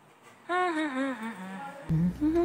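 A voice humming a slow, wavering phrase that falls steadily in pitch, starting about half a second in. A low background noise comes in just before the end.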